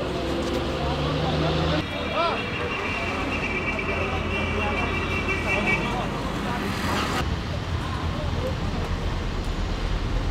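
Street ambience: a vehicle engine running steadily under scattered, indistinct voices, with a thin steady high tone for about two seconds in the middle. The sound changes abruptly twice.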